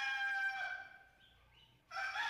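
A rooster crowing: one long, steady crow fades out about a second in, and another begins near the end.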